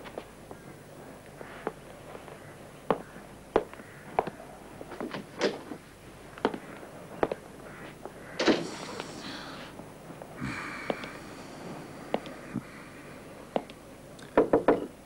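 Slow footsteps on a hard floor in a small room, roughly one step a second, then door sounds in the second half: a louder clatter and a brief rasp.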